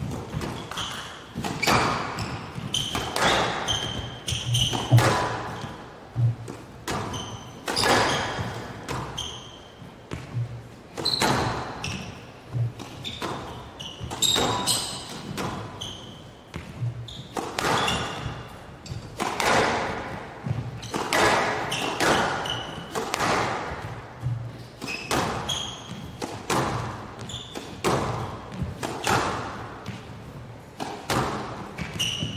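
A long squash rally on a glass show court: the ball is struck by rackets and hits the walls about once a second or a little slower, each hit ringing in a large hall, with short high squeaks from the players' shoes on the court floor between the strokes.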